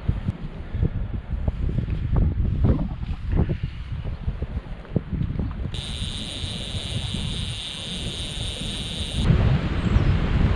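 Wind buffeting the microphone, with a low rumble and many small clicks and knocks of handling in the first half. A steady high hiss joins in about six seconds in and cuts off suddenly about three seconds later.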